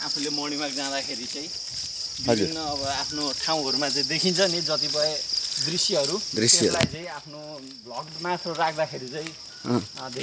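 A steady, high-pitched insect drone, dropping off and going fainter about seven seconds in, under men talking.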